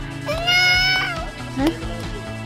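A young child's high-pitched whining cry: one drawn-out wail that rises, holds and falls, with a short sound about a second and a half in, over background music.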